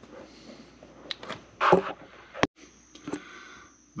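Faint handling noise: a few light knocks and clicks, with a sharp click a little past halfway and a brief dropout, after which a faint steady high whine is heard.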